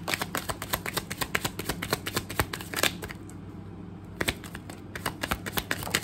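A tarot deck being shuffled by hand: a quick run of card flicks and clicks for about three seconds, a short pause, then a few more near the end.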